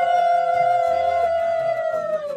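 Two steady, horn-like tones held together for about three seconds and fading out near the end, over a low repeating beat.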